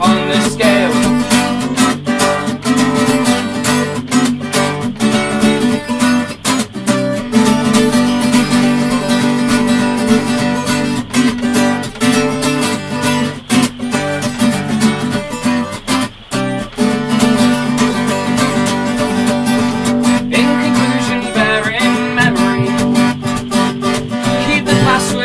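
Acoustic guitar with a capo, strummed and picked steadily in an instrumental passage between verses, with no singing.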